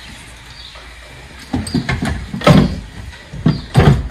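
A quiet stretch, then from about one and a half seconds in a series of loud, irregular knocks and clunks, six or so, from something being handled.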